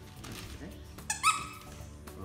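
A squeaker inside a stuffing-free plush dog toy squeaks once, short and high-pitched, about a second in.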